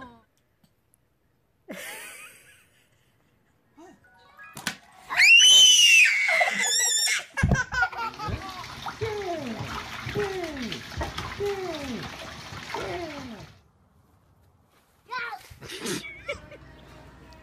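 A toddler laughing in a run of repeated falling laughs, about one a second, lasting several seconds, after a high squeal. The first couple of seconds are nearly silent.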